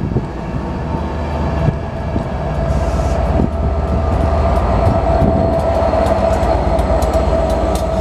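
Loco-hauled passenger train running past along the platform with a steady low rumble and scattered wheel clicks, then the Class 67 diesel locomotive 67008 at its rear comes level, its engine hum growing louder through the middle.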